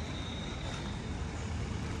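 Steady background noise of light road traffic, with a faint, high, steady tone running through it.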